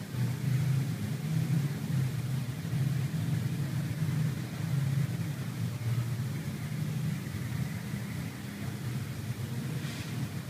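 A steady low hum throughout, with light rustling of a stiff brocade fabric being shifted and smoothed by hand.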